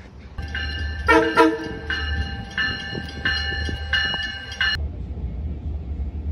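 Passenger train at a station: its horn gives two short blasts about a second in, and a bell rings repeatedly, about three strokes every two seconds, until it cuts off suddenly near the five-second mark. A steady low rumble runs underneath.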